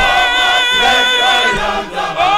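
Male choir singing together, moving through several notes, with a brief break near the end before a new sustained chord begins.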